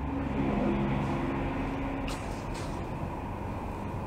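Steady low rumbling background noise with a faint hum, and two short soft hisses about two seconds in.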